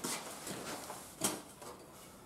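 Faint handling noise from working a snowblower's controls before a cold start: a short click at the start and one brief knock or rustle a little over a second in.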